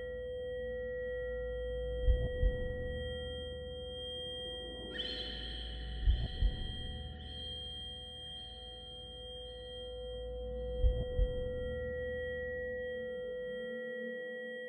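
Dark ambient horror score: held ringing drone tones over a low rumble, with three soft double thuds spaced about four seconds apart. A brighter, higher shimmering tone comes in about five seconds in and slowly fades.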